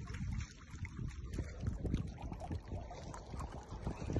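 Wind buffeting the microphone, a gusting low rumble that rises and falls, with faint scattered clicks above it.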